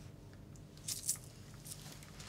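Food packaging being handled: a few short crisp crinkles about a second in and again near the end, over a faint steady hum.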